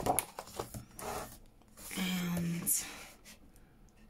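Sheets of thick card being handled and moved on a desk: short rustles and a few light clicks, with a short hummed 'mm' from a woman about two seconds in.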